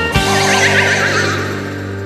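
The song's closing chord rings out and slowly fades. Over it, in the first second, comes a high, wavering cry falling in pitch.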